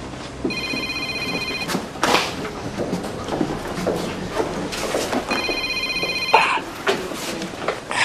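Mobile phone ringing: two rings, each a bit over a second long and about five seconds apart, with a few soft clicks and knocks between them.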